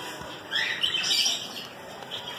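Small caged aviary birds chirping: a burst of short, high-pitched calls from about half a second to a second and a half in.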